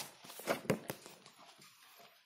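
Handling noise of a book being moved and picked up: rustling paper with a few quick knocks in the first second, then a fainter rustle.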